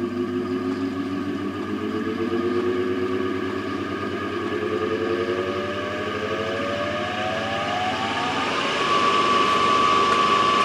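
3 HP Lancashire three-phase induction motor running on single-phase 230 V through a capacitor, winding slowly up to speed: its whine rises steadily in pitch and settles into a steady high tone about nine seconds in. The slow run-up comes from feeding the three-phase motor from one phase with a capacitor.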